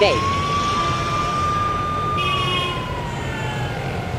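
Ambulance siren sound effect: one long wailing tone that rises quickly at the start, holds steady for about two seconds, then falls slowly.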